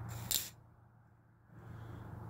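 Twist-off cap of a 40 oz Mickey's malt liquor bottle being cracked open slowly: one short, sharp crack about a third of a second in, letting gas out of the beer, which was shaken in transit, so that it doesn't foam over.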